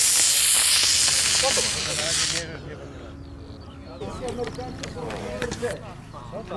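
A model rocket's solid-fuel motor firing at launch: a loud rushing hiss for about two and a half seconds that ends abruptly. Quieter voices and a few sharp clicks follow.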